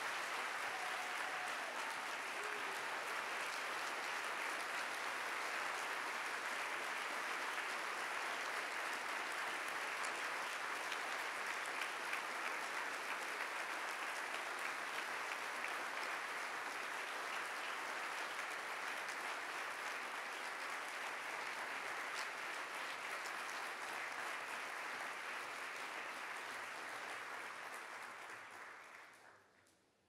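Audience applauding steadily, fading out just before the end.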